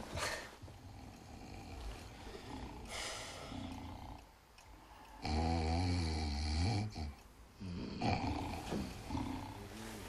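Men snoring: one loud, long snore about five seconds in, with fainter snoring sounds before and after it.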